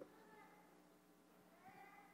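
Near silence: room tone in a large hall, with a faint click at the very start and faint wavering pitched sounds.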